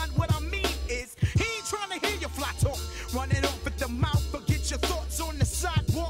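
Hip hop track: a drum beat with a steady bassline and vocals over it. The bass drops out briefly about a second in, then returns.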